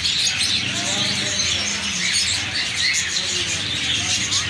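Many caged small birds, budgerigars among them, chirping together in a continuous mass of overlapping short calls.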